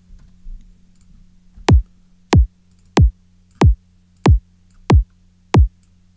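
A synthesized kick drum from the Kick 2 drum synth playing on a loop: seven hits starting about a second and a half in, one every two-thirds of a second or so. Each hit is a sine wave that starts high and pitches down very fast, a click falling into a low thump, played back while its top end is being trimmed with an EQ.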